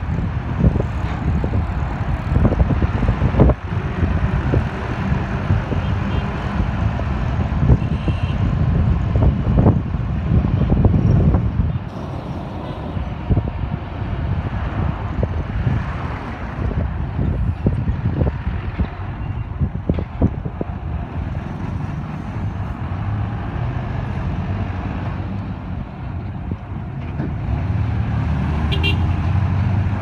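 Busy street traffic heard from a moving vehicle in its midst: a mix of motorcycle, minibus and truck engines with a heavy low rumble throughout.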